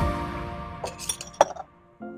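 Music dying away, then a few sharp glass clinks of bottles and jars set down on a counter, the loudest about one and a half seconds in.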